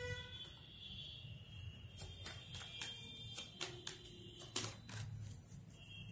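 Tarot cards being handled: a series of light clicks and snaps as a card is drawn from the deck and laid down on the table, over faint background music.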